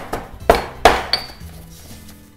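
Stone pestle pounding in a dark stone mortar, crushing fresh rosemary, thyme and sage with salt and pepper: three sharp knocks in the first second, followed by a brief ringing chink.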